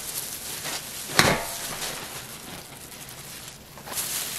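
Steamed brown-rice and mugwort rice-cake dough turned out of a steamer basket onto a wooden cutting board, with one sharp thump about a second in, amid handling noise from the gloved hands and paper liner.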